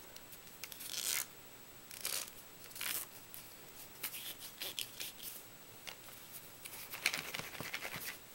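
Paper rustling and rubbing in a series of short, scratchy bursts as hands press and smooth glued paper strips around a rolled-paper tube. The loudest cluster comes near the end.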